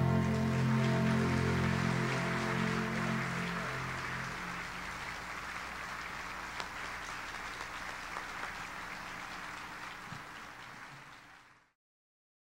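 An orchestra with strings holds its final chord, which dies away over the first few seconds as audience applause swells. The applause then fades steadily and cuts off just before the end.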